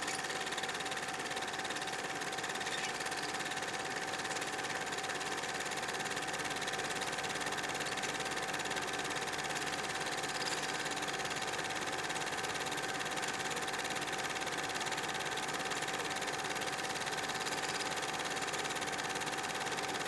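A steady, unchanging mechanical-sounding drone with a constant hum and hiss, like a small motor running. It has no beat or melody.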